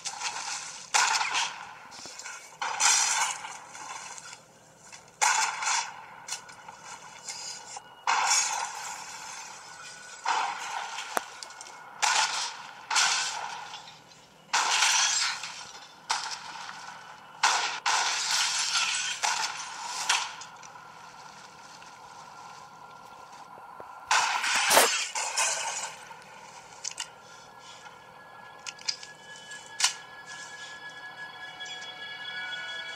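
Movie gunfight soundtrack heard through a portable DVD player's small built-in speakers: a run of sharp gunshots and crashing impacts, thin and tinny with no bass. The bursts come thick through the first twenty seconds, ease off, then one loudest crack comes about twenty-five seconds in.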